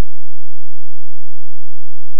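A steady low electrical hum with several evenly spaced overtones, and a few faint clicks over it.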